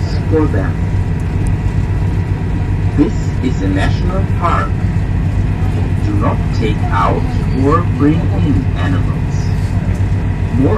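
A ferry's engine drones steadily, with voices talking on and off over it.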